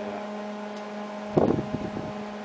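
Steady low machine hum of a running motor, holding one pitch throughout. About one and a half seconds in, a brief loud rough noise breaks in.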